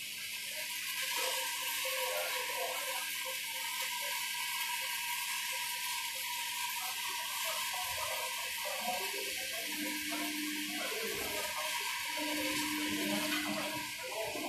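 A steady rushing hiss with a faint low hum underneath.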